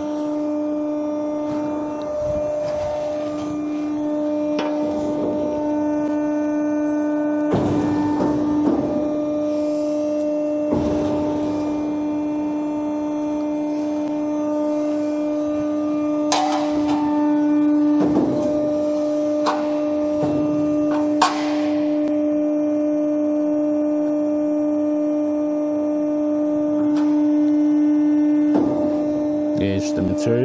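Four-roll hydraulic plate bending machine running a programmed rolling cycle: its drive and hydraulic pump give a steady, even-pitched hum, with a few short knocks as the rolls and plate move.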